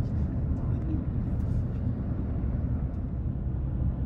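Road and engine noise inside a moving car's cabin: a steady low rumble.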